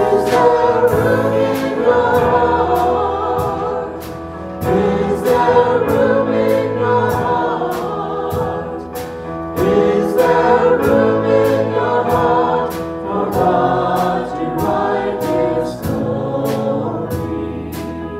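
Small mixed group of men's and women's voices singing a hymn in harmony through microphones, accompanied by keyboard and electric guitar. The song goes in sung lines with short breaks between them, over a light steady beat.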